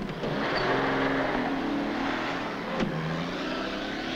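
An open touring car's engine running as the car pulls away and drives off, its pitch wavering, with a single short click near three seconds in.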